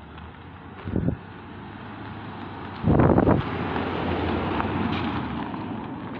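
A car driving past close by, its tyre and engine noise building and then easing off toward the end. About three seconds in there is a loud burst of wind noise on the microphone.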